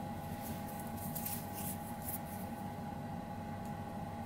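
Faint light ticks and scrapes of a flywheel being pushed by hand onto a tapered leaded-steel split collet as a test fit, over a steady workshop hum with a constant tone.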